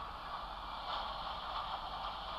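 Steady background hiss with no distinct event.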